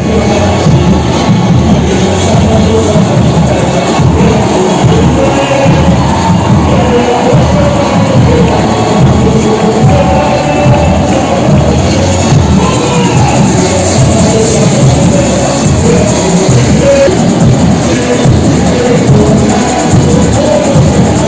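Samba school's samba-enredo played live and loud: the bateria's drums under sung vocals, with crowd noise mixed in.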